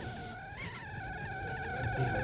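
Stainless steel stovetop kettle whistling at the boil: a steady two-note whistle that wavers slightly and grows louder.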